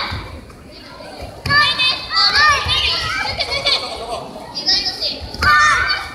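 Several children's high-pitched voices shouting over one another, in bursts from about a second and a half in and again near the end, typical of young karateka calling out encouragement during a bout.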